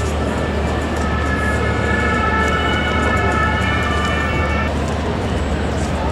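Busy event ambience: a steady low rumble with sustained music-like chord tones over it, which stop abruptly about five seconds in.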